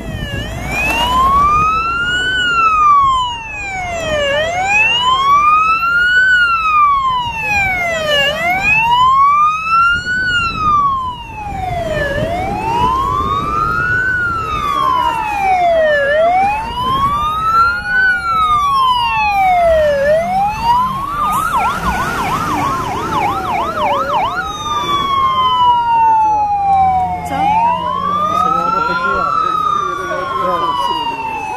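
Emergency vehicle sirens wailing, loud, the pitch rising and falling slowly about every four seconds. A little after two-thirds in it switches briefly to a fast yelp, and near the end a second siren overlaps with its own sweeps.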